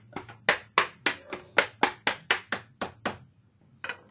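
A quick run of sharp taps on the laptop by hand, about four a second and a dozen or so in all, fairly even in pace.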